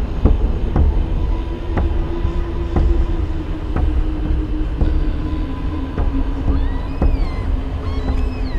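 Train running on rails: a deep rumble with a knock about once a second and a steady hum that slowly falls in pitch. High gliding tones come in near the end.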